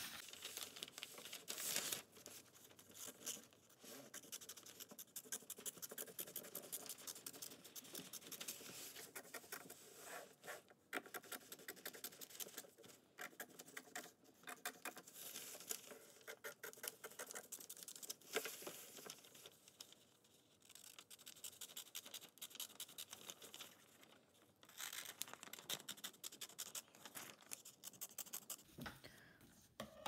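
Faint, repeated snips of scissors cutting around a circle in thin newspaper, with the paper crackling as it is handled and turned.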